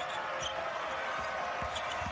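A basketball being dribbled on a hardwood court, a few low bounces, over the steady noise of an arena crowd.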